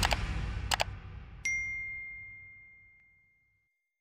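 Subscribe-button animation sound effect: two quick clicks, then a single bright bell ding about a second and a half in that rings out and fades. The tail of the outro music dies away underneath at the start.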